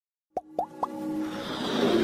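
Logo intro sound effects: three quick, rising-pitched plops starting about a third of a second in, followed by a swelling whoosh that builds over electronic music.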